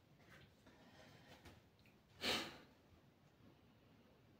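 Mostly quiet room with one short, breathy sniff about two seconds in: a person smelling a freshly served plate of food held up close.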